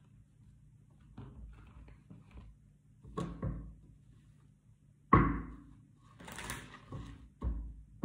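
Tarot card decks handled on a cloth-covered table: a few knocks of a deck against the table, the loudest about five seconds in, and a brief rustle of cards moving against each other a little after six seconds.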